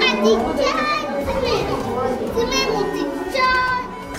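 Young children's voices chattering and exclaiming excitedly, several overlapping, with some high-pitched calls in the second half.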